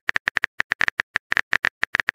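A quick, slightly uneven run of keyboard typing clicks, about ten a second: a typing sound effect for a text message being written.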